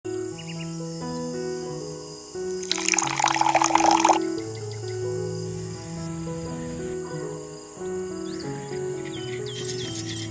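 Background music with a slow melody of held notes. About three seconds in comes a loud splashing burst lasting just over a second: milk poured into a small steel bowl.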